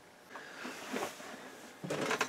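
Printed circuit boards being handled and set down on a bare aluminum chassis: a faint scraping rustle, with a light click near the end.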